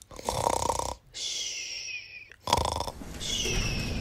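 Comic cartoon-style snoring for a sleeping doll: a rasping snore on the inhale followed by a high whistle that falls in pitch on the exhale, heard twice.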